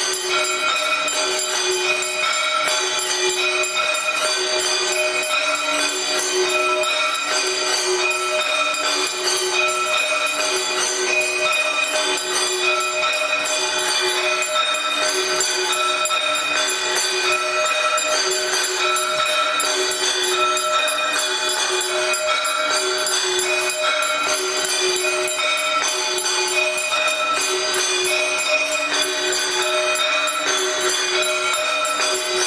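Arti music in which bells jingle in a dense, steady wash over a low two-note figure that repeats about once a second.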